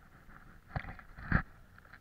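Two short, dull thumps about half a second apart, the second louder, over a faint steady background.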